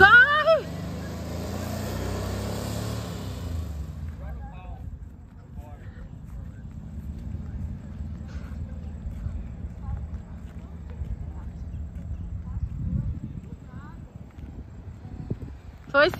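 Volkswagen Kombi van driving away, its engine fading into the distance, with a shout at the start. The loud noise ends suddenly about four seconds in, leaving faint distant voices over outdoor quiet.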